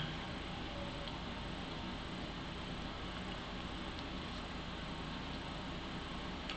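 Steady background hiss with a couple of very faint ticks; the winding of wire onto the ferrite toroid makes no clear sound.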